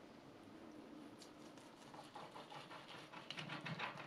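Kitchen knife sawing through the crisp roasted skin and stuffing of a roast duck: a run of quick, quiet crackles that starts about halfway in and is loudest near the end.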